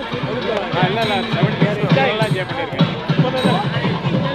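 Nadaswaram playing a Carnatic melody with sliding, wavering ornaments. Underneath it runs a fast, steady beat of drum strokes from the thavil accompaniment.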